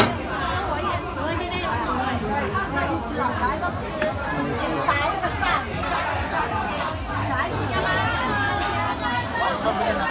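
Many voices of shoppers and stallholders chattering at once, steady market hubbub.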